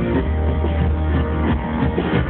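Live band music led by a strummed acoustic guitar, with drums and keyboard.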